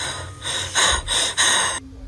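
A person's heavy, gasping breaths, about five in quick succession, cutting off suddenly near the end.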